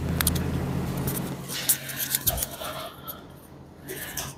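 Microphone handling noise: a small wireless microphone is rubbed and fiddled with in the hand, with scattered clicks over a low hum that cuts in abruptly and fades out over the last second or so.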